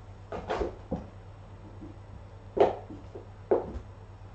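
A cat scuffling at a cardboard box on wooden floorboards while pouncing at a wand toy: four short scuffles and knocks, the loudest about two and a half seconds in and again a second later.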